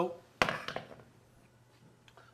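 A colander set down on a wooden cutting board: one sharp knock with a few light rattling clicks right after.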